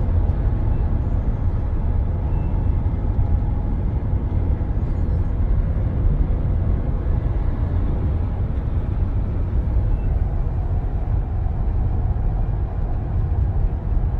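Steady low rumble of road and engine noise inside a bus travelling along a motorway, recorded on a phone.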